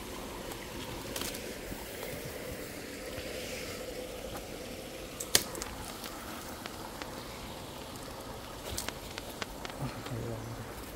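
A small woodland stream runs steadily, with twigs and undergrowth rustling and crackling underfoot. One sharp snap comes a little over five seconds in, and a few lighter clicks follow near the end.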